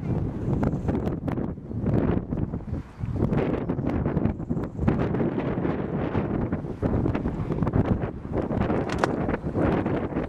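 Wind buffeting the microphone, a low, noisy rush that rises and falls in gusts, with a brief lull about three seconds in.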